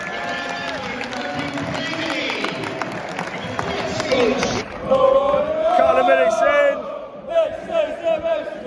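Football crowd in a covered stand chanting together with handclaps. About four and a half seconds in, the sound cuts to a duller recording in which one loud voice close by rises over the crowd.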